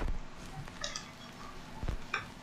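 Quiet room with two low thumps, one at the start and one near the end, and a few faint clicks in between. This is handling noise; the last thump comes as over-ear headphones are being put on.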